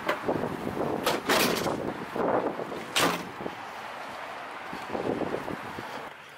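Sprinter van door being pushed shut: a few knocks, then a sharper clack about three seconds in, over wind on the microphone.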